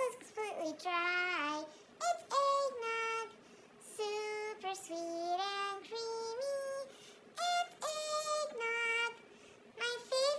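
A woman singing in a high, chipmunk-style voice, in short phrases of held notes with brief pauses between them.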